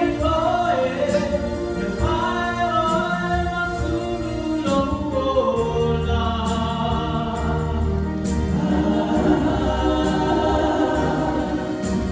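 A small group singing a gospel hymn in harmony into microphones, with steady instrumental backing.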